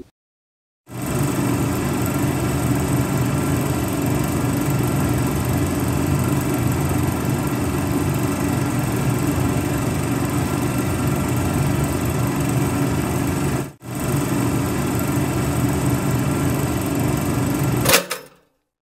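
A loud, steady motor-like drone with a fixed hum, cut off once for a moment about fourteen seconds in.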